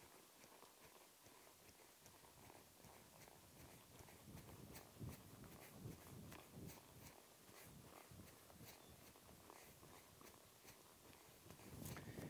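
Very faint, irregular thuds of a ridden horse's hooves on soft arena dirt, a little stronger in the middle.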